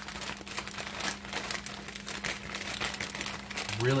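Plastic zip-lock bag crinkling in quick, irregular rustles as hands knead raw shrimp with minced garlic and salt inside it, with a faint steady hum underneath.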